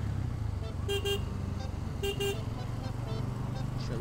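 A vehicle horn gives two quick double toots, about a second in and again about two seconds in, over the steady low rumble of a motorcycle riding in slow traffic.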